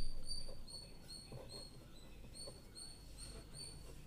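Pen scratching on paper as words are handwritten, with a regular series of short high-pitched chirps, about three to four a second, that stop near the end. A louder low sound swells at the very start and fades within about a second.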